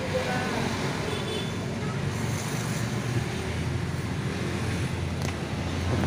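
Steady low rumble of a small engine running, with general street noise around it.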